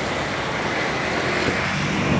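Road traffic noise: cars and motor scooters driving past on a multi-lane street, a steady wash of engine and tyre sound.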